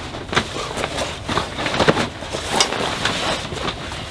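Irregular clicks and knocks of a camping cot's curved steel leg bracket being worked loose from the bunk frame and lifted away.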